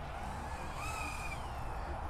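Diatone GTR349 three-inch FPV quadcopter on its stock Gemfan 3052 propellers in flight: a faint motor-and-propeller whine that bends up and down in pitch around the middle, over a steady hiss. It is not very loud.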